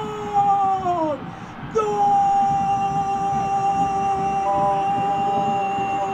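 Football commentator's long drawn-out "gooool" goal cry, a shouted voice held on one pitch for several seconds. He breaks for breath about a second in and then holds a second long note. Crowd noise sits beneath the cry.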